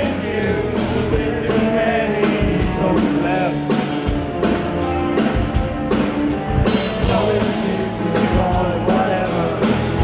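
Rock band playing live at full volume: drum kit beating steadily under electric guitars and bass, with a sung lead vocal.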